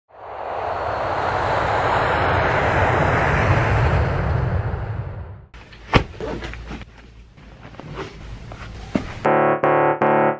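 A steady rushing noise for about five seconds that cuts off abruptly, then quieter rustling with a sharp knock as leather lace-up boots are pulled on. Piano music starts near the end.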